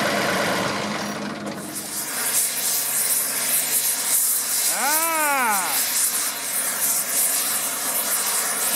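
A John Deere 2038R compact tractor's diesel engine idles briefly. Then an oxy-acetylene torch flame hisses steadily as it heats the steel of the bent front-end loader arm so it can be straightened.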